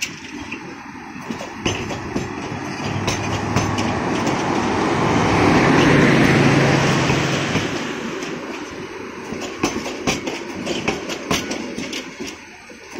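Passenger train coaches rolling past close by, wheels clacking over the rail joints. The rush of the train swells to its loudest about halfway through, with a low steady hum under it, then eases off.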